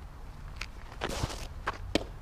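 Softball pitcher's shoes stepping and scuffing on a dirt infield through the windup and stride, with a longer scrape about a second in as the drag foot slides through the dirt. Near the end comes a single sharp pop, the pitch landing in the catcher's mitt.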